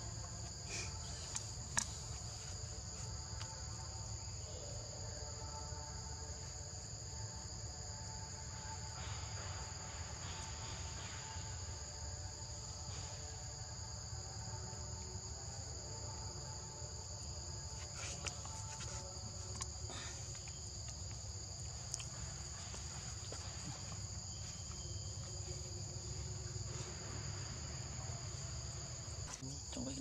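A steady, high-pitched chorus of forest insects, holding two pitches without a break, over a low rumble, with a few faint clicks.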